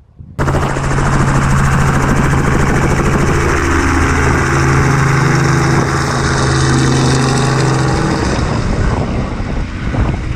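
Light helicopter with a two-blade main rotor flying overhead: loud, steady rotor chop over a low engine hum, starting abruptly. The low hum fades out near the end.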